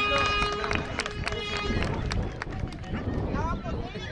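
Voices of players and spectators calling out on an outdoor pitch, with a steady held horn-like note during the first second and a half that then stops.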